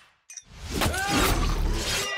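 A brief hush, then glass shattering and sharp impacts in a cinematic sound mix, rising in loudness about half a second in.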